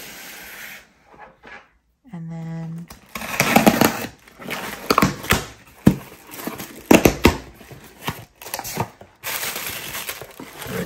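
Cardboard shipping box being torn open by hand: a string of sharp rips and crackles as the taped flaps are pulled apart, then the crinkle of a plastic bag inside. A short hum about two seconds in.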